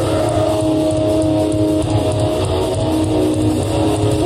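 A heavy metal band playing live: electric guitars hold sustained chords over continuous, dense drumming, with no vocals.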